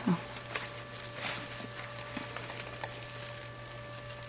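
Quiet room tone with a steady low electrical hum, broken by a few faint clicks and light rustles.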